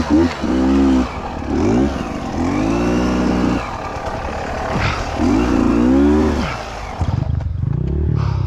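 Beta 200RR two-stroke dirt bike engine revving up and down, the pitch rising and falling repeatedly. Near the end it changes to a steadier, rougher running sound.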